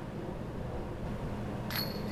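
Disc golf putt hitting dead-center in the chains of a metal basket near the end: a sudden, brief metallic chain jingle over a quiet, steady background.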